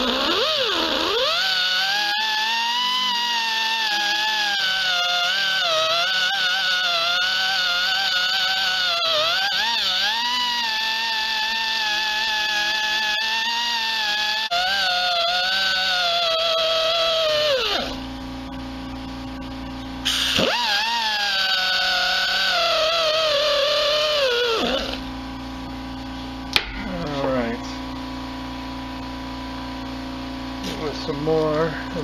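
Pneumatic die grinder with an abrasive bit grinding down a weld on a dirt bike engine case, its high whine rising and falling in pitch as it bites and eases off. It pauses for a couple of seconds past the middle, runs again, then stops with several seconds to go, leaving a steady low hum.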